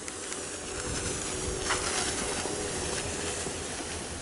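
Steady hiss of a plastic sled sliding over snow under a man standing on it, swelling slightly midway through the run.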